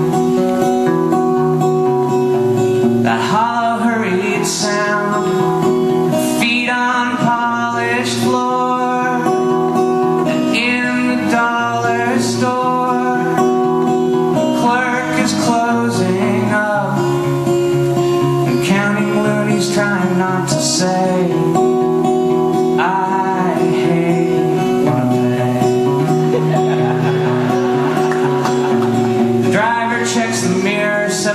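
Solo acoustic guitar played steadily under a man's singing voice, the sung lines returning every few seconds.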